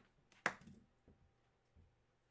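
A single sharp knock about half a second in, from objects being handled on the table, followed by faint handling rustle.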